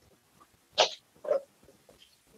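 Two short, breathy noises from a man pausing in his speech, one just under a second in and a smaller one about half a second later.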